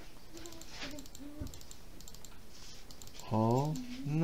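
Faint computer keyboard and mouse clicks as a frame is selected in the software. Near the end comes a short hummed "mm" from a person's voice, the loudest sound in the stretch.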